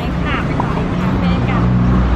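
Steady low rumble of street traffic, with short snatches of women's voices over it.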